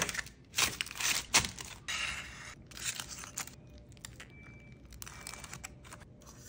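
Aluminium foil crinkling and rustling as hands crumple and handle foil-wrapped potatoes, a series of crackles that are loudest in the first half and then softer.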